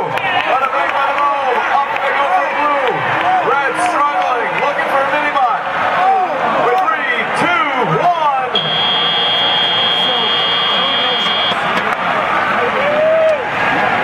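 Arena crowd yelling and cheering through the last seconds of a robotics match. About eight and a half seconds in, the end-of-match buzzer sounds as one steady high tone lasting about three seconds.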